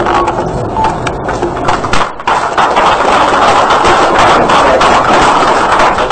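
Audience applauding: scattered claps at first, filling out into dense, steady clapping after about two seconds.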